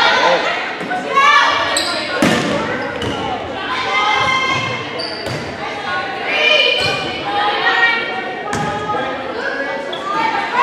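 Volleyball rally in an echoing gymnasium: a few sharp hits of the ball, the clearest about two seconds in and again near the end, under a steady mix of players and spectators calling out and shouting.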